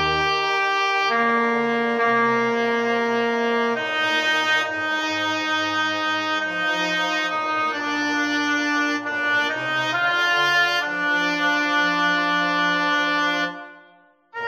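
Slow four-part choral arrangement rendered as a practice track, the voice lines played as held, brass-like synthesized tones in sustained chords that change every second or two, with a low piano chord at the very start. The sound fades away just before the end.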